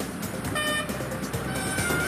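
Road traffic noise with a short vehicle horn toot about half a second in, under background music.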